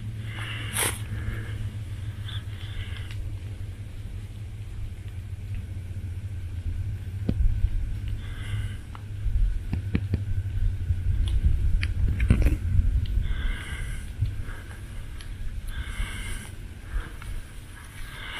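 Wind buffeting a small handheld camera's microphone: a continuous low, uneven rumble, with a few light knocks and rustles from handling and footsteps in the second half.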